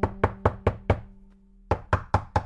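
An old, worn door knocker rapped in quick runs: five knocks about five a second, a pause, then another run starting near the end. A held low musical tone sounds under the first knocks.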